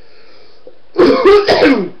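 A man coughing and clearing his throat: a loud fit of several quick coughs starting about halfway through and lasting under a second.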